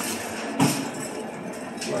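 Wire shopping carts rattling as they are pushed into an elevator, with a clank just over half a second in.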